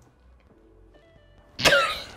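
A woman's sudden burst of laughter about one and a half seconds in, falling in pitch, after a quiet stretch.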